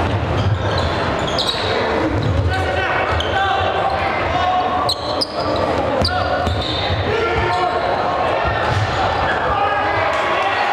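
Live gym sound of a basketball game: a crowd of voices talking and shouting throughout, with a basketball bouncing on the hardwood court.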